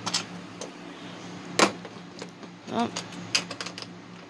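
A few sharp metallic clicks and knocks from handling a caster's mounting hardware on the underside of a sheet-metal cabinet. The loudest click comes about a second and a half in.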